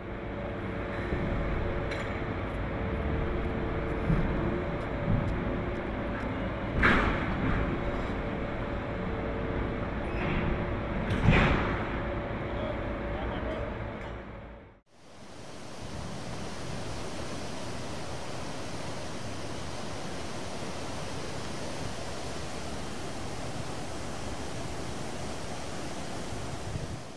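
Container-port machinery running with a steady hum, with two loud sharp bangs of a shipping container being handled, about seven and eleven seconds in. After a sudden cut, steady wind and water noise.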